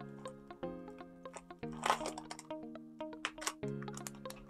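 Soft background music with sustained chords that change every second or two, over faint crinkling and rustling of a plastic-and-paper packet being unwrapped by hand.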